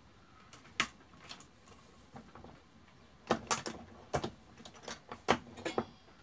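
Scattered sharp metallic clicks and clinks from handling reloading gear on the bench: one click about a second in, then a quicker run of clicks from about three seconds on.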